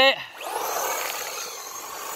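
Arrma Fury 2WD brushed-motor RC short-course truck on a 3S LiPo driven flat out into donuts: a steady hiss of the tyres scrubbing on tarmac with a faint high motor whine, starting about half a second in.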